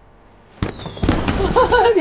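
Aerial fireworks going off: after a quiet start, a sharp bang about half a second in with a brief falling whistle, then a run of crackling bursts.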